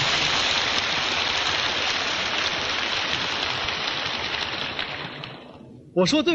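Lecture-hall audience applauding, a dense even clapping that dies away near the end.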